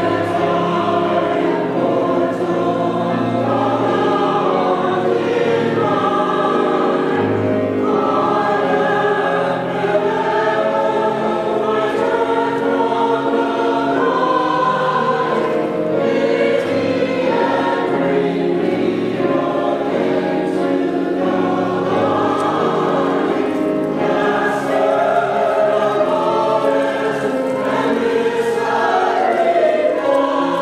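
Church choir singing a sacred anthem in sustained chords, with piano or organ accompaniment.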